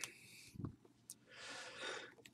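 Faint handling noise of card boxes being moved and slid on a tabletop: a soft thump just over half a second in, then a longer rustling scrape near the end.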